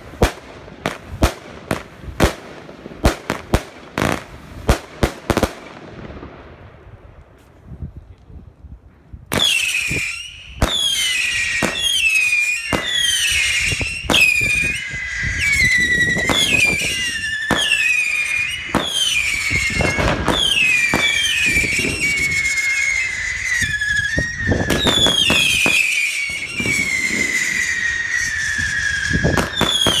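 Fireworks going off: a rapid string of sharp bangs for the first six seconds, then a short quieter stretch. From about nine seconds in, a cake fires many siren-like whistles, each falling in pitch, overlapping one another with pops between them.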